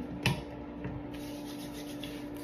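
Hands rubbing over the skin of a bare arm in a soft, steady scuffing, with one short tap about a quarter second in. A steady low hum runs underneath.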